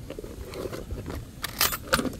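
LiPo battery packs and their wired connectors being handled on a plastic storage box, with a quick run of clicks and clatters about one and a half seconds in.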